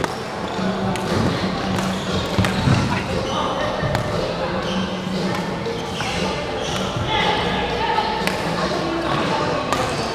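Busy badminton hall: overlapping voices and chatter echo around the room, with a steady low hum. Sharp clicks of rackets striking shuttlecocks and players' shoes on the wooden floor come at irregular intervals.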